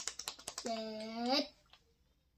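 A fast drumroll of taps, about ten a second, ending about half a second in. Then a voice holds one sung note for about a second.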